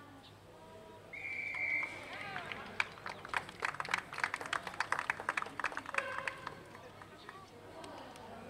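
Referee's whistle: one steady blast about a second in. It is followed by a few seconds of quick, sharp hand clapping and shouts from spectators near the microphone.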